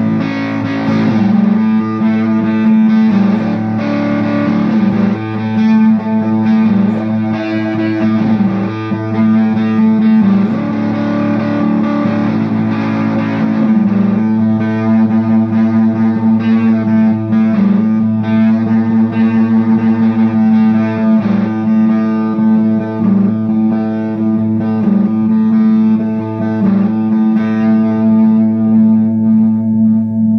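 Electric guitar played through a Mojo Hand FX Pompeii silicon fuzz pedal: sustained, fuzz-distorted notes changing over a steady low note held throughout.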